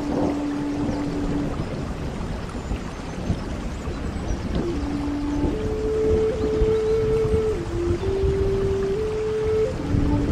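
Native American flute playing a slow melody of long held single notes: one note fades out early, and after a pause the flute comes back about halfway, stepping up to a higher note held for a couple of seconds. A steady hiss of rain runs underneath.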